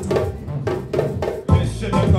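Live band music: a few sharp hand-drum strokes, then about one and a half seconds in the bass guitar and the rest of the band come in with a heavy, steady beat.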